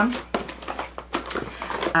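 Cosmetic products and their plastic and cardboard packaging being handled in a bag, giving a scatter of small clicks, knocks and rustles.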